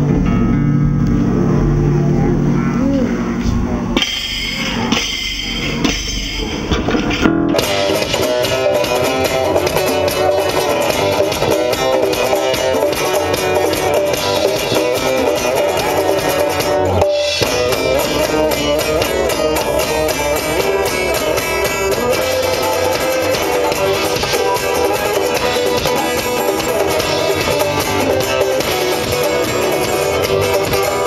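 A live funk band with electric bass, electric guitar, congas and drum kit playing an instrumental groove. The playing thickens into the full band about seven seconds in and breaks off for a moment about seventeen seconds in.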